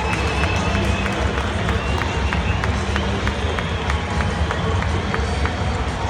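Ballpark crowd noise: many voices talking at once over a steady low rumble, with short high-pitched tones sounding again and again.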